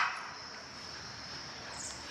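Outdoor ambience dominated by a steady, high-pitched chirring of insects on a summer lawn.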